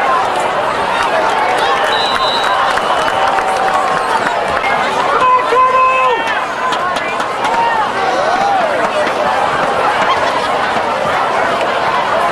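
Football crowd in the stands: many overlapping voices talking and calling out, with no clear words. A louder held call rises above the crowd about five seconds in.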